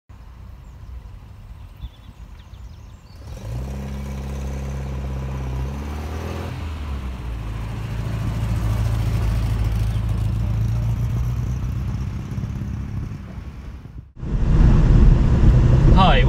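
MGB GT's 1.8-litre B-Series four-cylinder engine running as the car drives along. Its pitch drops about a third of the way in and settles to a steady hum that fades away. Near the end it cuts abruptly to the louder engine heard inside the cabin.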